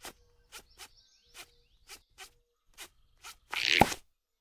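Cartoon sound effects of gloves being tugged off finger by finger: a run of short soft pops about two a second. Near the end comes a louder swish that ends in a thump.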